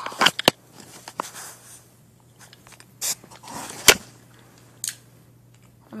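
Plastic toy parts and packaging being handled: a few short clicks at the start, a brief rustle about three seconds in, and one sharp click just before four seconds, the loudest sound.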